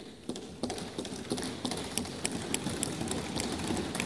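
Many members of parliament thumping their hands on their wooden desks at once: a dense, steady run of knocks in a large chamber, the customary desk-thumping in approval of the announcement just made.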